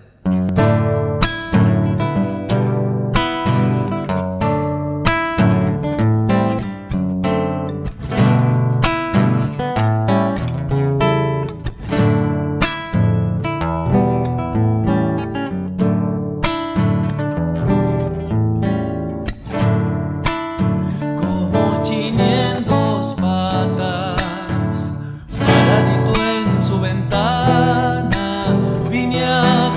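Classical nylon-string guitar playing a tonada cuyana introduction in plucked notes and chords. A man's voice with vibrato comes in over the guitar in the last several seconds.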